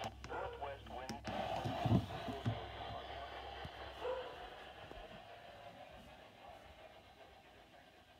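Midland WR120EZ weather radio being switched to another station: a couple of sharp button clicks, then its small speaker playing a faint, unclear broadcast voice over hiss. The sound fades gradually toward the end.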